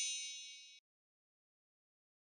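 Fading tail of a bright, high bell-like chime sound effect, ringing out and then cutting off suddenly just under a second in.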